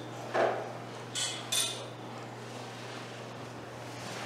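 Thin Bible pages being leafed through on a lectern. A soft knock comes about half a second in, then two crisp page flicks around a second and a half in.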